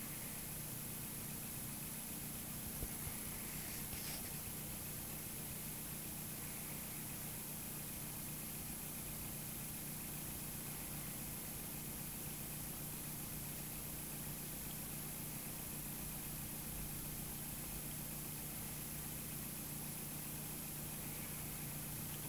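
Small homemade pulse motor with a magnet rotor and drive coil running steadily at full speed: a faint, even hum.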